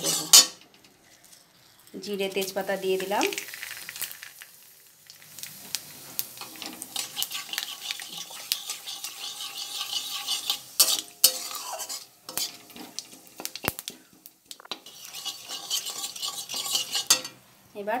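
Flat metal spatula stirring and scraping hot oil in a metal kadai, the oil sizzling steadily, with scattered sharp clinks of the spatula against the pan. A short pitched sound about two seconds in.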